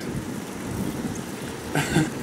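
A steady rushing hiss and rumble, with a short sharper sound just before the end.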